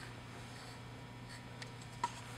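Faint light scratching of a paintbrush working epoxy resin on fiberglass cloth, with a few soft strokes in the second half, over a low steady hum.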